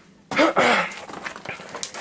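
A person's short, loud breathy vocal sound, falling in pitch, about half a second in, followed by a string of light knocks and scuffs.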